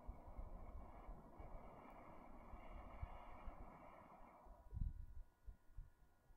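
A long, steady breath blown onto a spark caught in a piece of charred wood, ending about four and a half seconds in, with low thumps of handling underneath.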